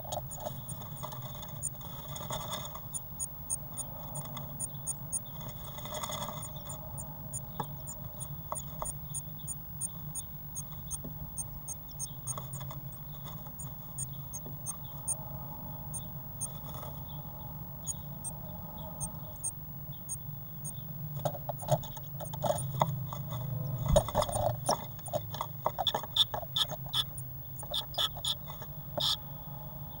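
Blue tit moving about inside a wooden nest box, scratching and tapping at the moss and grass of the nest, in bursts that grow louder in the last third. A steady low electrical hum from the box's camera setup runs underneath, with a long run of faint high ticks through the first half.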